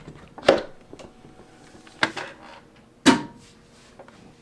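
Clicks and clunks from a SentrySafe digital safe's lever handle and bolt mechanism as the handle is worked after the keypad accepts the code: three sharp knocks, the loudest near the end.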